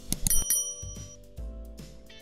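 Subscribe-button sound effect: a couple of quick clicks, then a bright bell ding that rings for about a second. Soft background music plays under it.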